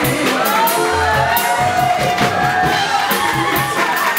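Live band playing: walking upright bass, drums with steady cymbal strokes and piano, with voices shouting and whooping over the music.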